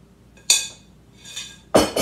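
Glass mixing bowl knocked three times while dough is turned out of it onto a wooden board, each knock ringing briefly. The last knock, near the end, is the loudest and carries a dull thud.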